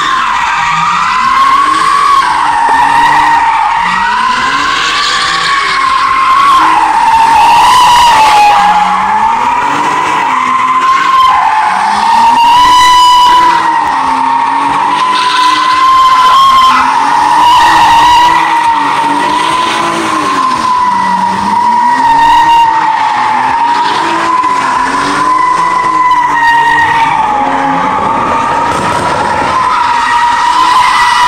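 A car doing donuts: the spinning tyres give one continuous, slightly wavering screech, while the engine revs rise and fall about every two seconds.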